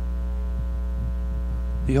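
Steady electrical mains hum on the sound system: a low drone with a long row of even overtones, unchanging throughout. A man's voice starts a word right at the end.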